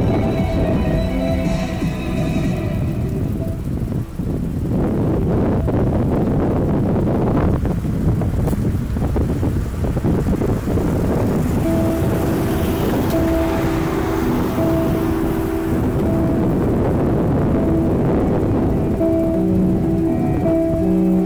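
Strong wind buffeting the microphone, over light-show music played loudly on a radio. The music's notes sink under the wind after the first few seconds and come back clearly about halfway through.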